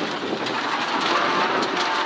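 Rally car engine running hard at high revs while driving on a loose gravel stage, heard from inside the cabin, with a steady rush of tyre and stone noise from the loose surface.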